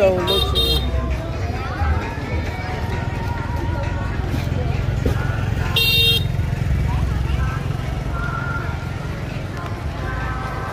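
Busy street-market ambience: crowd chatter over a steady low rumble of motorbike traffic, with two short, shrill toots, one near the start and one about six seconds in.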